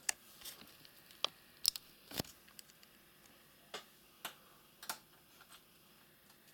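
Light, irregular clicks and taps of a screwdriver and its bits being handled in a plastic bit case, about a dozen in all, the loudest a little over two seconds in.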